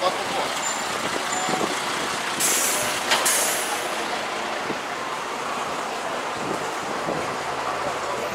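City bus stopped at the kerb releasing compressed air: two short, loud hisses about two and a half and three seconds in, with a sharp click between them, over steady street noise.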